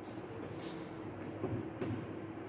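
Chalk writing on a blackboard: a few short scrapes and taps as a numeral is chalked, over a steady low hum.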